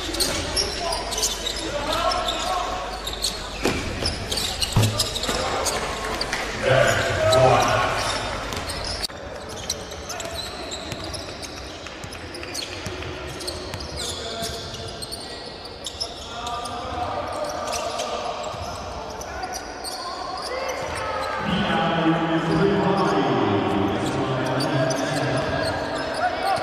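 Live basketball game sound: a ball bouncing on the hardwood court with players' and coaches' indistinct shouts, echoing in a large, mostly empty hall. The background changes abruptly about nine seconds in.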